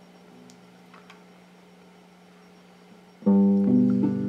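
Electric guitar: a quiet stretch with a faint steady hum and a few light clicks, then about three seconds in a full chord is struck loudly and rings on.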